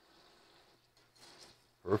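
Pork loin chop laid into melted butter and olive oil in a stainless pot, giving a faint, brief sizzle about a second in over a low hiss of gently heating fat. A spoken word starts at the very end.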